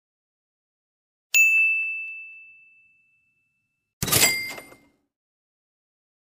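A single bright bell-like ding sound effect that rings out and fades over about a second and a half, followed about a second later by a short noisy metallic crash that dies away within a second.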